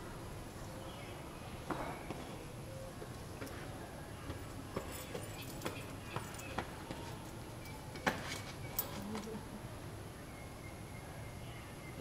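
Quiet outdoor ambience with a steady low background rumble and scattered light taps and scuffs of shoes and hands on sandstone blocks as someone climbs up the stone steps, the sharpest taps a few seconds apart in the middle of the stretch.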